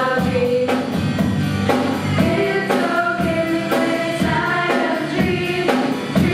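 A live band performing a song: several female voices singing together in sustained notes over keyboard, guitar and drums, with a steady beat.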